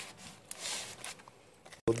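A short, soft scraping rustle, about half a second long, as a foil-lidded plastic ration tray is slid across a tabletop.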